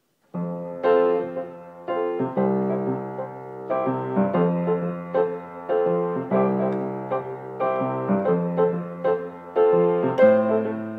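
Solo instrumental introduction to a song, starting a moment in: chords struck every second or so, each ringing out and fading before the next.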